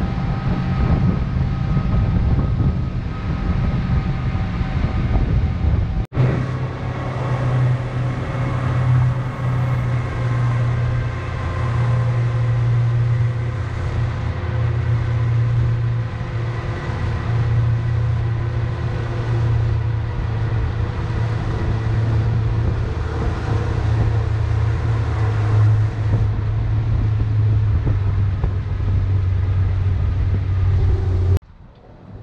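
A motorboat's engine running steadily at speed, a deep hum, with water rushing past the hull and wind on the microphone. The sound breaks off for an instant about six seconds in, then carries on with a stronger hum.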